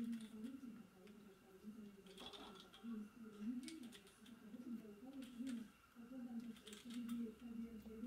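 A 3x3 Rubik's cube being turned by hand, its plastic layers making a few faint clicks, over a quiet wavering tune.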